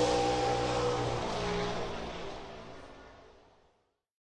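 Race car engine sound effect running steadily and fading out, gone about three and a half seconds in.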